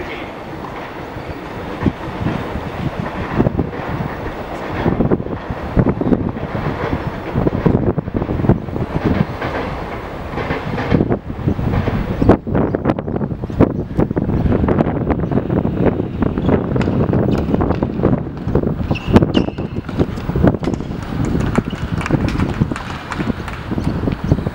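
Wind buffeting the camera's microphone: a loud, uneven rumble that gusts up and down.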